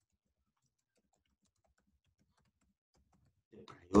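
Faint computer-keyboard typing: soft, scattered keystrokes. A man's voice starts up near the end.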